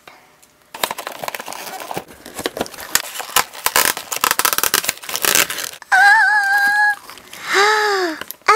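Cardboard toy box and clear plastic packaging crinkling and crackling as the box is opened and the doll's plastic tray is pulled out, for about five seconds. Near the end a woman's voice holds a sung note, then a short vocal sound follows.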